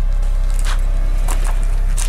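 A loud, steady low drone or rumble, with a few faint clicks or rustles on top.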